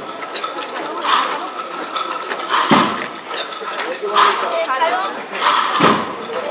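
Silver candelabra and metal fittings of a Holy Week paso clinking as the float sways with the costaleros' steps: repeated sharp chinks, with two heavier jolts, over a murmuring crowd.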